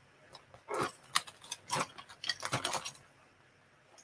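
Hand spindles and small spindle bowls clicking and knocking against each other as they are rummaged through in a basket, a scatter of light clicks that stops about three seconds in.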